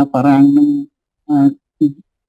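Speech only: a person talking in short phrases with brief pauses.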